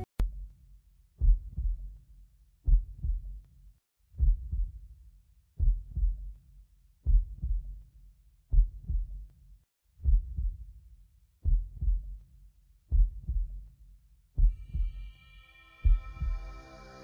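Heartbeat sound effect: low double thumps, lub-dub, repeating steadily about every second and a half. Sustained synth tones come in near the end.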